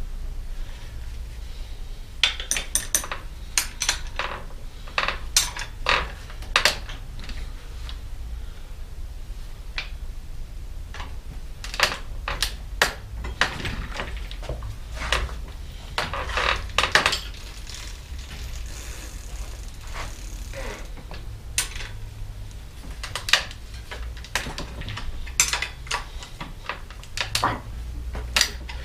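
Irregular metallic clinks and clicks of a wrench and bicycle chain as the rear wheel is set back in the frame to tension a chain that was too loose, over a low steady hum.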